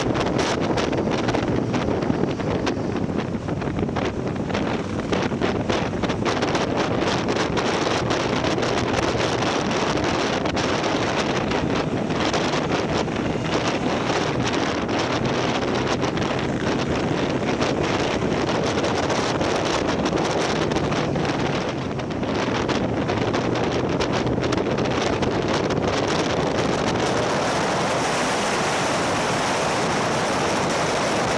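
Wind rushing over the microphone of a camera mounted on a moving motorcycle, a steady dense rush, with the motorcycle's engine running steadily underneath.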